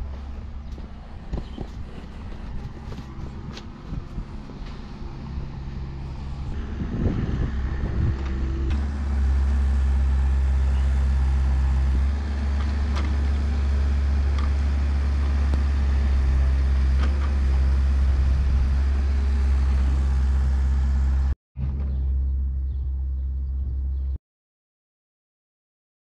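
Heavy diesel machinery engine running steadily with a deep low drone, louder from about nine seconds in, with a few light knocks; the sound cuts off suddenly near the end.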